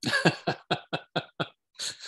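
A man laughing: a quick run of short laughs that grow weaker, then a breathy exhale near the end.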